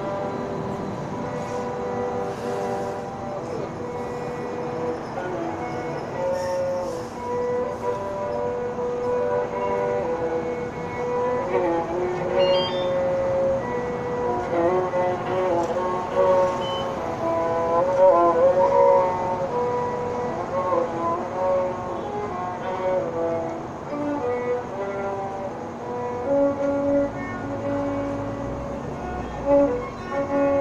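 Solo violin playing a slow melody in long held notes, with slides between notes and wavering vibrato on the sustained ones.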